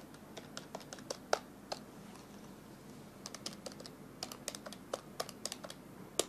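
Keys clicking on a handheld calculator as figures are punched in, in irregular runs: a few presses at the start, a pause, then a quicker string of presses from about halfway through.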